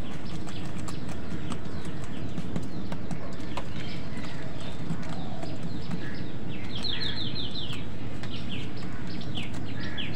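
Birds chirping in short, scattered calls, with a quick run of five or six falling notes about seven seconds in, over a steady low rumble.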